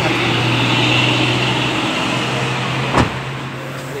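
A steady low mechanical hum with a hiss over it, and a single sharp click about three seconds in.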